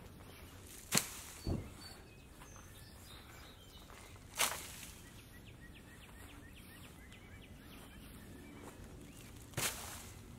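Spade digging up sod: a few sharp, short strikes and scrapes of the blade into turf and soil, about four in all, one of them a dull thud. Birds chirp faintly in the background.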